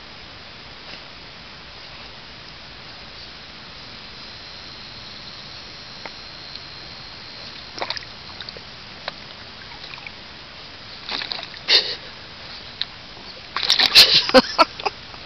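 Shallow water in a plastic kiddie pool splashing and sloshing as a silky terrier paws and noses at a crawfish on the bottom: little more than a low background at first, then a few short splashes, the loudest cluster near the end.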